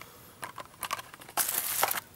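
Handling noise of small plastic items: a few light plastic clicks, then a brief crinkling rustle about one and a half seconds in. This comes as a die-cast toy car in a clear plastic protector case is put down and the next one picked up.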